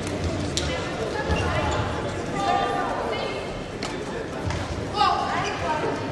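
Badminton rackets striking the shuttlecock with sharp cracks, and shoes squeaking on the court mat during a rally, echoing in a large sports hall over background voices.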